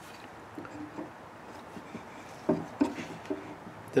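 A few light wooden knocks and rubs as a wooden rocker is pushed into the slot cut in the bottom of a chair leg, test-fitting the joint. They come about a second in, then several more in the second half.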